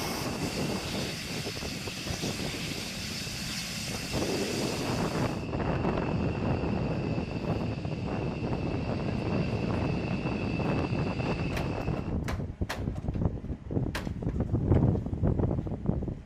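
Jet aircraft turbine noise on a flight line: a steady rumble with a high whine that stops about three-quarters of the way through, followed by a few sharp clicks.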